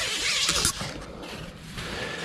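Tent door zipper and nylon fabric rustling as the door is handled, loudest in the first half second with a few sharp clicks, then quieter rustling.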